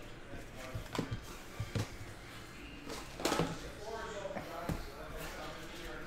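Quiet handling of trading cards: a handful of soft, scattered taps and clicks as cards are gathered and squared into a stack on a table.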